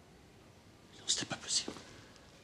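A man's voice whispering a few soft, hissy words about a second in, over quiet room tone.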